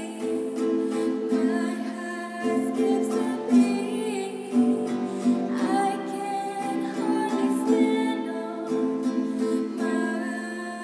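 A singer performing a song while accompanying themself on a strummed acoustic guitar.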